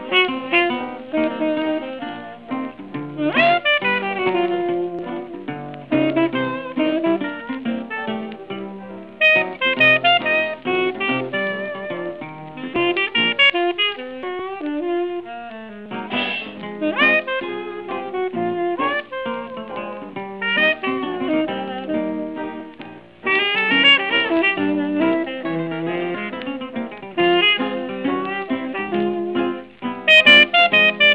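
1920s small-band jazz recording: a C-melody saxophone plays a flowing solo over a plucked guitar accompaniment, with a thin old-record sound that lacks high treble.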